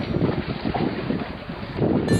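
Wind buffeting the microphone in uneven gusts, over the wash of the sea.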